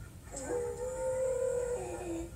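A long held howl-like cry from a film soundtrack playing on a screen. It slides up at the start, holds one steady pitch for over a second, then drops lower near the end.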